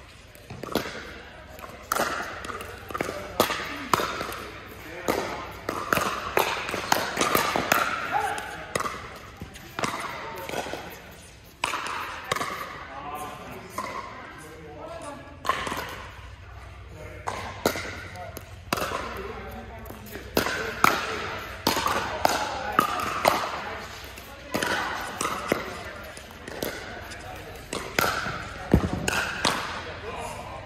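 Pickleball paddles hitting a plastic ball during doubles rallies: sharp pops at irregular intervals over a background of voices in an indoor hall.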